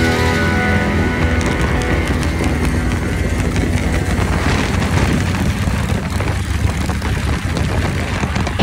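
Chopper motorcycles riding at road speed, engines running steadily with a dense low rumble, with rock music fading out underneath over the first few seconds.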